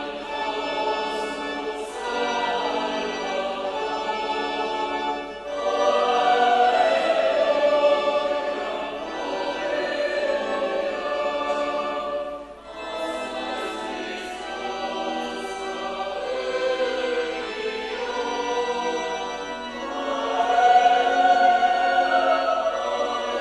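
Church choir singing the offertory hymn in phrases, with short breaks about five and a half and twelve and a half seconds in, and swelling near the end.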